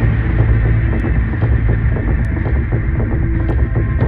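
Dark soundtrack drone: a loud, steady low hum with a throbbing pulse in the bass.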